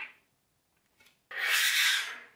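Small magnetic balls being shifted and rolled by hand against each other and the table top. A faint click comes about a second in, then a louder rubbing, scraping sound lasting most of a second near the end.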